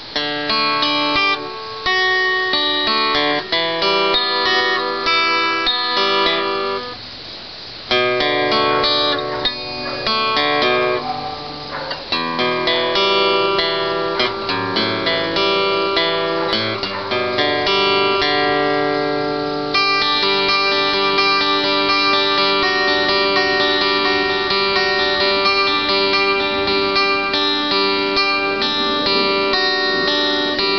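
Steel-string acoustic guitar played solo, strummed chords of an instrumental song, with a short break about seven seconds in and steadier, fuller strumming in the second half.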